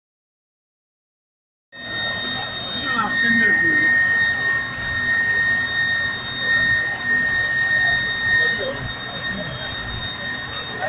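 Silent for the first couple of seconds, then a steady high-pitched alarm tone sounds without a break, over voices of a crowd and a low rumble.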